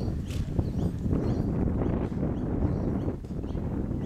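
Wind buffeting the microphone with a steady low rumble, with birds chirping now and then and the faint thuds of a horse cantering on grass.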